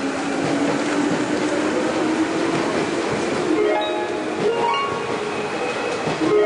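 Busy railway platform noise beside a standing commuter train: a steady low hum under the bustle of a crowd of passengers getting off. A few short musical notes come in over the last couple of seconds.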